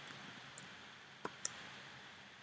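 A few keystrokes on a computer keyboard: sparse, short clicks, the two sharpest close together a little past a second in.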